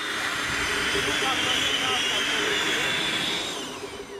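Rotors of a saucer-shaped four-rotor VTOL prototype running: a steady rushing noise with a high whine. Near the end the whine drops in pitch and fades as the craft sets down and the rotors spin down.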